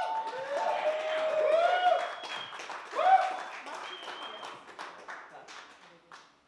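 A small audience clapping and cheering, with voices calling out over the applause. It peaks about three seconds in and then dies away.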